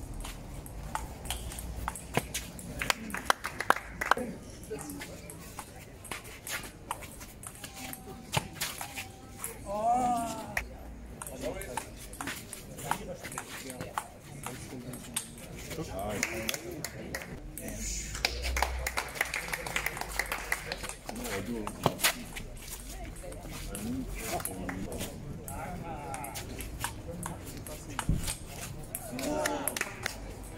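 Table tennis rallies: a plastic ball repeatedly clicking off rubber paddles and bouncing on a concrete outdoor table, in quick trains of sharp ticks, with voices talking in the background.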